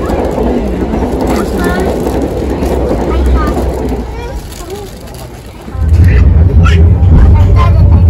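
Running noise inside a moving passenger train carriage, with the rush of another train passing close alongside on the next track for the first few seconds and voices of people in the carriage. About six seconds in, a much louder low rumble sets in.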